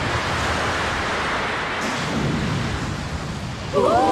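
Steady rush of sea water and surf, a cartoon sound effect. Near the end, several voices break into shouting.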